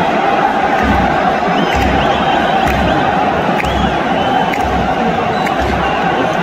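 Football stadium crowd chanting and cheering, with a bass drum beating steadily about once a second.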